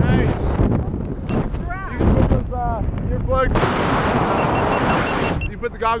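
Wind buffeting the camera microphone under an open tandem parachute, a steady low rumble. There are a few short voice sounds in the first half, and a louder rushing hiss past the middle that lasts about a second and a half.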